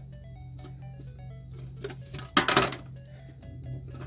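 Soft background music plays throughout. About two and a half seconds in there is a brief loud rattle as the metal tin lid is handled.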